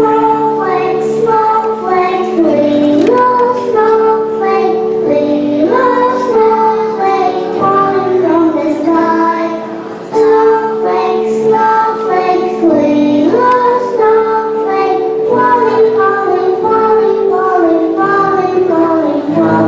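Young children singing a song together over instrumental accompaniment, with a short dip about halfway through.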